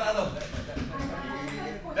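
Indistinct men's voices talking in the background, with nothing else standing out.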